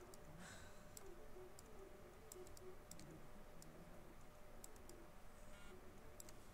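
Near silence, with about ten faint, sharp clicks of a computer mouse scattered through it.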